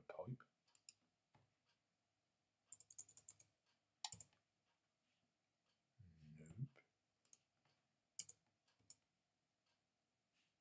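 Faint clicks of a computer keyboard and mouse: a quick run of keystrokes about three seconds in, and single clicks scattered through the rest.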